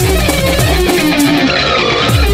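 Electric guitar playing a melodic line of single notes in a music track; the drums and bass drop out about halfway through, leaving the guitar on its own.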